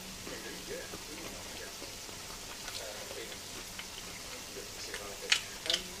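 Hot oil in a frying pan sizzling and crackling softly around frying onion bhajis, the oil's temperature dropping. A few sharper clicks near the end.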